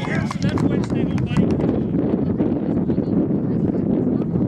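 Wind buffeting the camera microphone in a steady low rumble, with scattered short clicks and voices of players and onlookers in the background, clearest in the first second or so.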